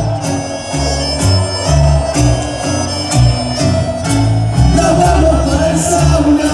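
Live band playing an instrumental stretch of a tango arrangement: a reedy accordion melody over acoustic guitars and low bass notes that change about every half second.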